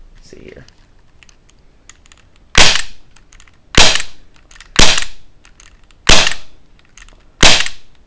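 Five shots from a CO2-powered, non-blowback Smith & Wesson M&P airsoft pistol: sharp, loud cracks spaced about a second apart, beginning a little over two seconds in.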